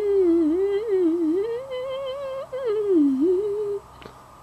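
A young girl humming a wandering tune with her lips closed, in one unbroken line that rises and falls in pitch, dips lowest shortly before the end, then stops.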